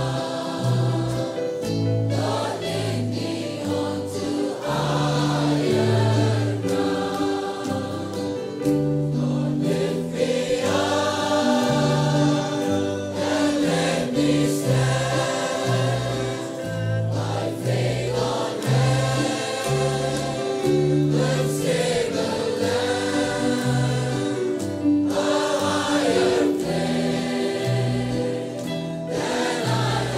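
Choir singing a worship song, with a moving line of low notes beneath the voices.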